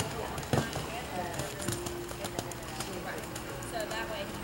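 Indistinct voices talking over a horse's hoofbeats on arena sand footing, with a sharp knock about half a second in. A steady hum comes in a little under two seconds in.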